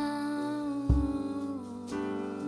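A woman singing a slow worship song, holding one long note into the microphone with a small step in pitch near the end. A deep low accompaniment note, likely from the piano, strikes about a second in.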